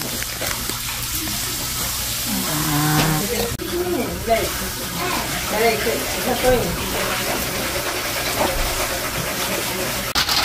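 A person's voice making drawn-out sounds that rise and fall in pitch, from about two seconds in until about seven seconds in, over a steady low background.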